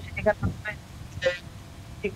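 A man speaking Bengali in short phrases with brief pauses, over a remote video link, with a low steady rumble underneath.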